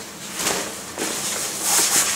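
Rustling of a textile motorcycle jacket being handled: two spells of fabric rustle, one about half a second in and a louder one near the end.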